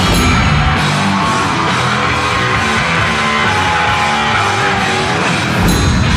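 Loud rock music with electric guitar, playing steadily.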